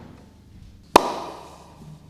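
A single sharp hand clap about a second in, ringing out in a large hall: the clap that marks the start of the take.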